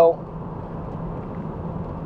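Steady road and engine noise heard from inside the cabin of a moving car, an even rush with a low hum underneath.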